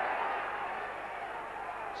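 Steady background noise of a large football crowd, easing slightly, as heard on an old match broadcast soundtrack.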